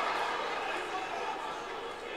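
Audience in a large hall laughing at a joke, the crowd noise slowly dying down.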